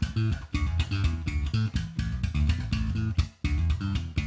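Electric bass played slap-style through a Line 6 Helix modelling a clean Ampeg SVT amp and 8x10 cabinet: a fast run of short, percussive slapped and popped notes, with a brief break a little after three seconds in.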